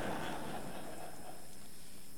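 Faint audience chuckling in a large hall, fading out over steady room noise.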